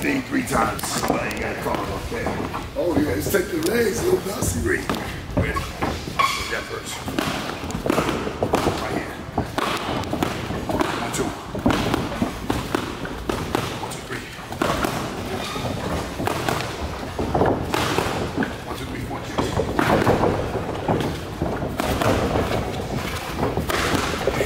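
Repeated thuds and slaps of a boxing defence drill: padded foam sticks swung at a boxer and gloved punches and footwork on the ring canvas, irregular strikes throughout, with voices over them.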